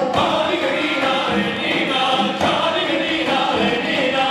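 Male voices singing an Armenian folk song, two lead singers on microphones with the ensemble's choir singing along.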